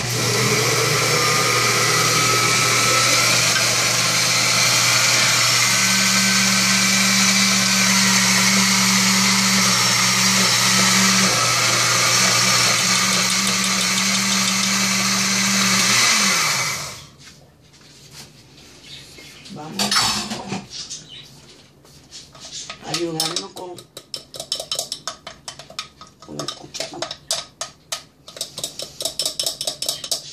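Countertop blender with a glass jar running steadily, blending banana pancake batter, then switched off about sixteen seconds in, its motor winding down. After that a metal spoon clinks and scrapes against the glass jar, stirring the batter.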